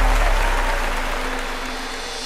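Audience applauding, gradually fading away, with a steady low musical tone held underneath.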